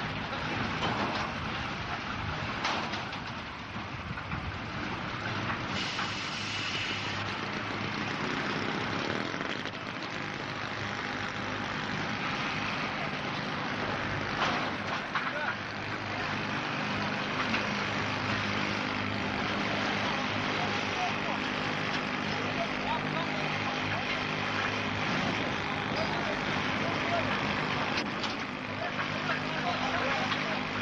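A vehicle engine running steadily, with indistinct voices over it.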